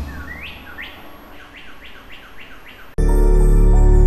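Bird chirps used as a sound effect in a TV channel ident: about seven short, rising chirps in quick succession, a few a second, as a whoosh dies away. About three seconds in, music with a deep bass cuts in suddenly and loudly.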